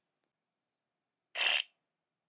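Home Assistant Voice Preview Edition speaker playing a short custom pre-announcement sound, a single brief blip about one and a half seconds in, signalling that a voice announcement is about to follow.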